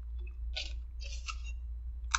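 A person chewing a mouthful of chicken sandwich, with two short wet mouth noises about half a second and a second in, over a steady low hum.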